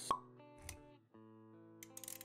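A sharp pop sound effect right at the start, followed by a low thud about half a second later, over soft intro music with held notes.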